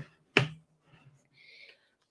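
A single sharp click about half a second in, followed by a faint low hum.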